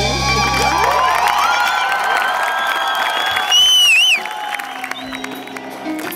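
Live rock band's sustained final notes ringing out as a song ends, with the crowd cheering and whistling. A shrill, wavering whistle close by is the loudest sound, a little past halfway, and the band's sound drops away just before it.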